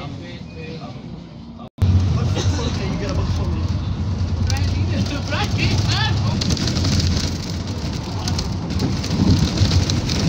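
Bus interior on the move: a steady low engine drone and road hiss, with passengers' voices. The sound cuts out for an instant near two seconds in, then comes back louder.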